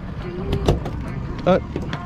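A landed Spanish mackerel dropping onto a boat's fiberglass deck: a couple of sharp knocks as it lands and flaps, over a steady low rumble.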